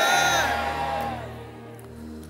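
A long, drawn-out shouted "Amen" that fades out about a second in, over soft sustained keyboard music.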